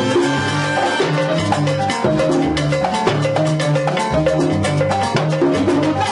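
Live salsa band playing: a conga drum struck by hand and maracas shaking keep a steady rhythm over a repeating bass line and keyboard notes.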